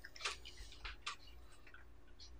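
Faint, scattered light clicks and taps from handling a glass jar and a paintbrush on a table, mostly in the first second and a half.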